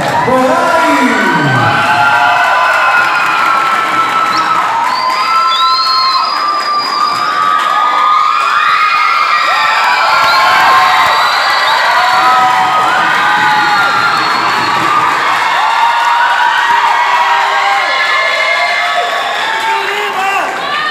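A large crowd cheering and shouting loudly and continuously, many high-pitched voices screaming at once.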